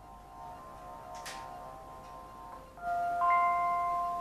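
Amazon Echo Flex smart speaker playing its electronic chime on powering up: soft held tones, then a louder chord about three seconds in. A single light click comes about a second in.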